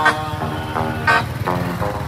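Electric guitar playing a bolero melody in a pause between sung lines, amplified through a small portable horn loudspeaker, with a motorbike going by close to it.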